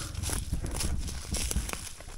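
Footsteps and legs pushing through dry, brittle brush: dead twigs and leaves crackling and snapping in irregular short clicks over a low rumble.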